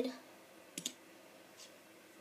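Light plastic clicks from a LEGO minifigure being handled: two quick clicks a little under a second in, then a fainter one.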